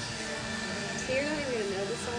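A person's voice with a gliding, wavering pitch from about a second in, over background music.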